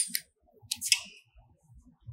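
Light handling noise: a sharp click right at the start, then a short rustle and a second brief clicky rustle about a second in, as a hand moves at the CNC router's spindle head.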